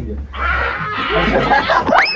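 A group of young men laughing loudly together, several voices at once, after a short shouted word. Just before the end, a quick rising whistle-like glide.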